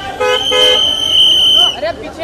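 Car horn tooting twice in short blasts near the start. A long shrill high-pitched tone holds steady over them and stops shortly before the end, amid crowd voices.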